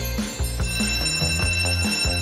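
Background music with a steady beat, over which a wall-mounted electric bell starts ringing about half a second in and keeps ringing.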